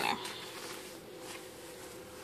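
Faint steady hum with light rustling.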